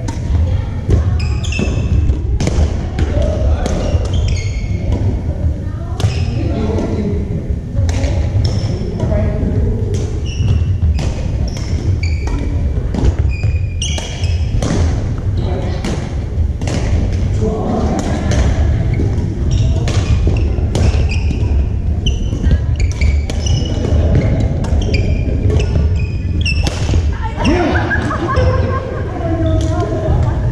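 Badminton rackets striking shuttlecocks in a rally, sharp hits one or two a second, with sneakers squeaking on the hardwood gym floor in between.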